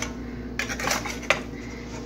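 Metal spatula scraping along a frying pan as it works under and turns a fried egg, with a sharp metallic click a little over a second in.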